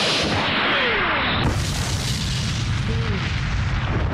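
Cartoon energy-attack and explosion sound effects: a continuous rushing blast with a falling whine early on, turning into a deep rumbling boom from about a second and a half in.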